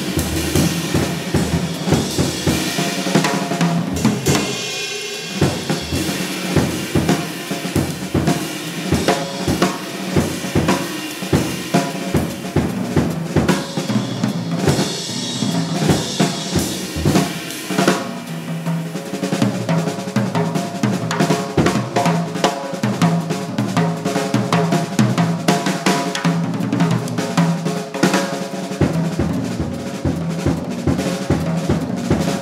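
Drum solo on a jazz drum kit: a dense, continuous stream of strokes across snare, bass drum, toms and cymbals.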